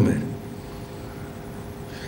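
A man's voice finishes a word at the very start, followed by a pause of steady, faint room hum.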